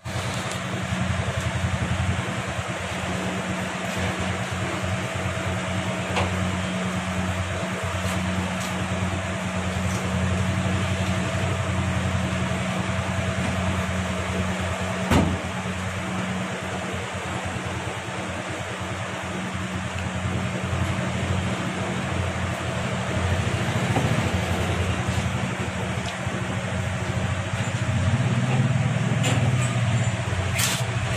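Steady mechanical hum and whir of machinery or a fan running, with a single sharp knock about halfway through.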